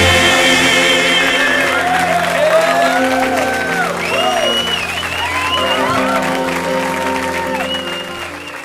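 Gospel music: singers and instruments holding a long chord, with gliding vocal runs above it and audience applause beneath.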